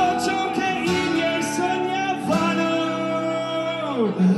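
Live rock band playing, with strummed acoustic guitar and a male voice singing, holding a long note in the second half.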